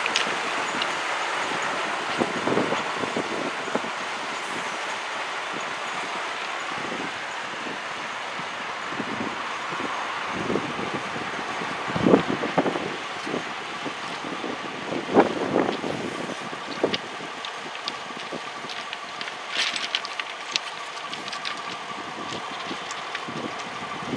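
Pair of Finnish Dv15 and Dv16 diesel-hydraulic locomotives running through a rail yard, their engines heard steadily over scattered clanks and knocks of wheels on the track, the loudest about 12 and 15 seconds in. A steady whine comes in about ten seconds in.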